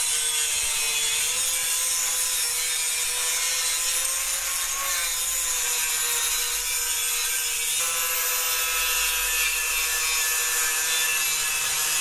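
Handheld angle grinder grinding welds flat on steel angle iron: a steady whine with a hiss of the disc on metal, its pitch wavering slightly.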